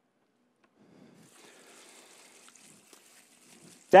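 Liquid pump cleaner pouring from a plastic jug into a plastic bucket: a faint, steady trickle that begins about a second in.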